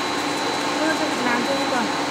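Steady whirring machine noise with a thin, high, steady whine, from a sublimation roll heat press running as it takes in transfer paper and fabric.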